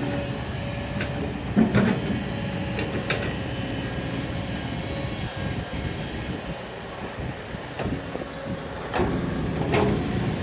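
Steady low engine hum, with a few brief knocks.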